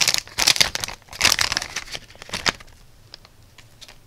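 Clear plastic zip-lock bag crinkling as it is opened and handled, in loud bursts over the first two and a half seconds. It then goes quieter, with a few faint clicks.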